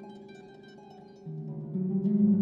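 Solo concert harp being played: soft plucked notes higher up for the first second, then louder low notes entering about a second and a quarter in and again near the end.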